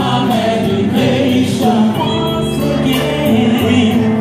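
A male vocal group singing together in harmony into microphones, over amplified instrumental backing with a steady beat.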